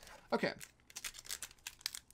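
Foil Pokémon booster pack wrapper crinkling in the hands as it is handled for opening, a rapid run of small crackles.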